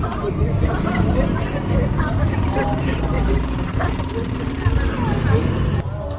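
Street ambience: many people talking at once over the steady rumble of passing cars and motorbikes.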